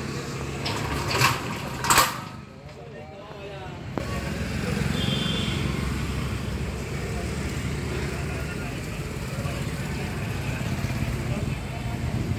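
Indistinct voices over a steady low background hum, with a few sharp clicks in the first two seconds. The sound drops away briefly after about two seconds, then the hum and murmur return.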